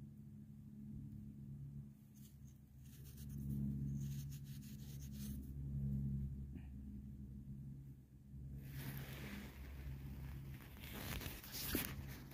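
Faint rustling and scratching handling noise, with a few light clicks early on and a longer scratchy rustle from about two-thirds of the way in, over a low steady hum.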